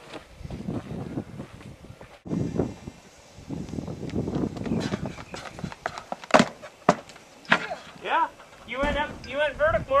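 Footsteps of a pole vaulter running his approach down the runway. A little past halfway come three sharp strikes about half a second apart.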